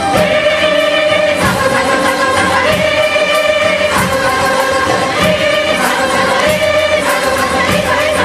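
An Indian classical ensemble performing: a group of voices singing long held notes together over many sitars.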